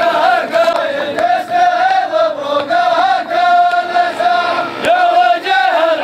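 A large group of men chanting together in unison, in short phrases that rise and fall.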